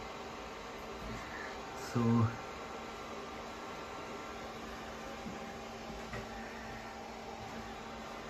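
Cooling fan of a hybrid battery charger-discharger running steadily while the unit discharges a battery pack, with a steady low hum.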